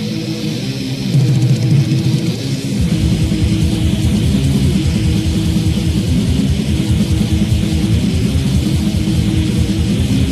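Heavy metal band playing live, with a distorted electric guitar riff. About three seconds in, the drums and bass come in with a fast, pounding rhythm that carries on.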